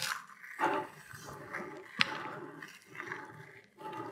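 Faint gritty crunching and rolling as the V-wheel carriage of a HepcoMotion GV3 linear guide is pushed by hand along its rail through dry Weetabix crumbs, with a sharp click about two seconds in. The carriage rolls through the debris without jamming.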